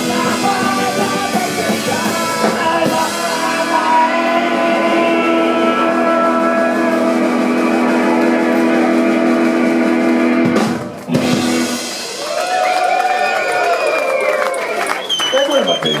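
A garage punk band plays loudly live, with electric guitars, bass and drums over held sustained tones. The music cuts off suddenly about ten and a half seconds in. After that come shouting voices and loose guitar sounds.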